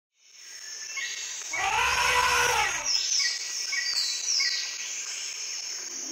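Jungle-style ambience fading in: a steady high-pitched hum with repeated short falling bird chirps, and one long arching animal call about one and a half seconds in.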